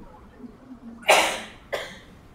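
A person coughing twice: a longer cough about a second in, then a short second one.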